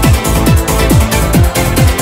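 Instrumental stretch of a 1990s eurodance track. A steady kick drum, each hit falling quickly in pitch, lands a little over twice a second under synth pads and hi-hats, with no vocals.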